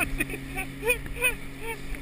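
A towing motorboat's engine running as a steady low hum, heard from the inner tube on the tow rope, over the wash of water and wind. Short shouts or laughs come through several times.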